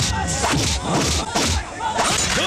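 Film fight-scene sound mix: a quick string of hit sound effects, about three a second, with men shouting and action music underneath.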